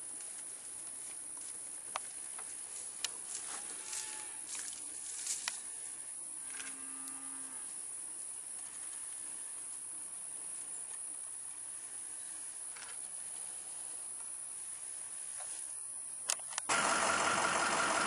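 Quiet pasture ambience with a steady high hiss, a faint short cow moo about seven seconds in, and near the end a vehicle engine starting and then running steadily.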